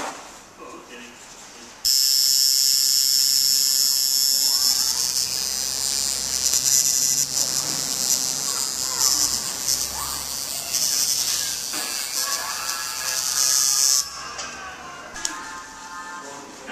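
Electric tattoo machine buzzing with a steady high-pitched whine. It switches on about two seconds in, runs for about twelve seconds and stops suddenly.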